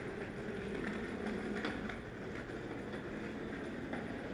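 Wheels of a rolling suitcase rumbling steadily over concrete sidewalk, with a few faint clicks over the joints.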